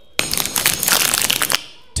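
Crinkling and crackling of a food wrapper being unwrapped by hand, lasting about a second and a half.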